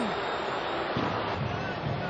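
Stadium crowd noise, a steady wash of many voices under the TV broadcast.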